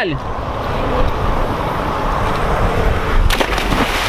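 Steady wind rumble on the microphone, then about three seconds in a person belly-flops into lake water with a loud splash.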